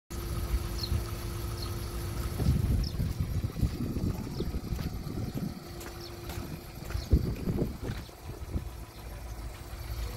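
A car engine idling steadily, with an irregular low rumble of wind buffeting the microphone.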